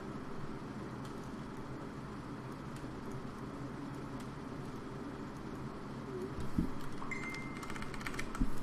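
Steady room tone: a constant hiss with a faint low hum, with a couple of faint clicks and a brief faint high tone near the end.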